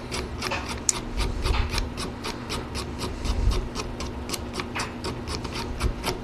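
Knife blade scraping and scoring diagonally across the paper edges of a clamped book block's spine, in quick repeated strokes about five a second, roughing the spine so the binding glue will key in.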